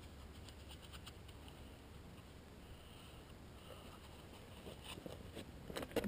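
Faint outdoor background with a low rumble, and a few soft clicks in the last second or so.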